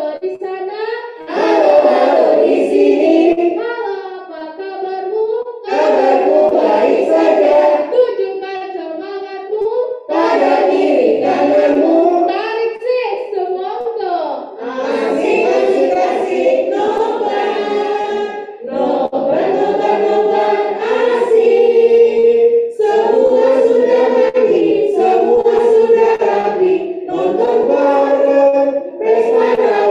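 A group of children and women singing together in phrases, with short breaks between lines.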